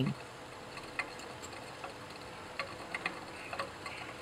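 Glass flask stirred on a magnetic stirrer: a faint steady background with a few light, irregular ticks, like the stir bar knocking against the glass.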